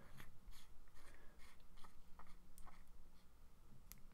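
Faint, scattered light clicks and small handling noises, a dozen or so over a few seconds, from a small vape device being handled in the hands.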